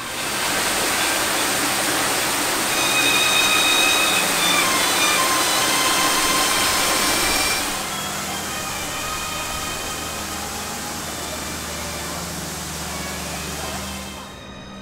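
A steady rushing noise, loud for the first eight seconds, then dropping suddenly to a lower level, with music playing faintly underneath.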